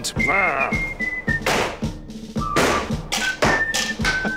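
Background music with a steady beat and held melody notes, a short laugh near the start, and two short hissing rushes of air about a second apart from a pump-action toy air blaster being pumped and fired.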